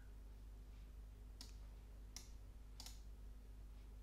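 Near silence with three faint, short clicks about a second apart, from the computer as image files are selected and opened.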